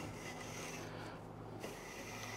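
Long-line flax fibres being pulled through the tines of a large hackle comb, a faint scraping that dips briefly a little after a second in. The flax is being re-hackled to comb out tangles left from tight bundling in storage.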